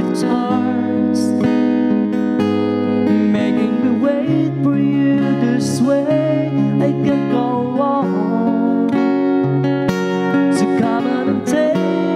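Acoustic guitar strummed in a slow ballad, with a man singing along.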